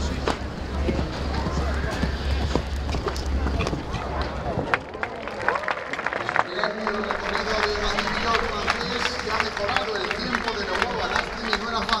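Hoofbeats of a show-jumping horse cantering on the sand arena, then a crowd clapping once it crosses the finish about six seconds in, with a man's voice talking over it.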